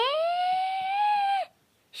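A person's voice drawing out one long "yeah": it rises in pitch, holds steady for about a second, then stops.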